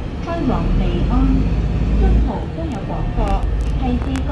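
People talking inside a moving bus over the low rumble of the bus in motion; the rumble eases about two and a half seconds in.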